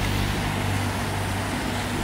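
A small motorboat's engine running steadily over the water, a low drone with the hiss of its wash, easing off slightly in the first second.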